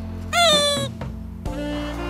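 A single high-pitched animal cry, lasting about half a second, rising and then falling slightly in pitch, heard over background music.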